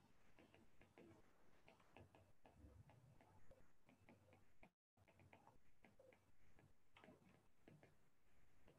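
Near silence with faint, irregular ticks: a stylus tip tapping a tablet's glass screen during handwriting.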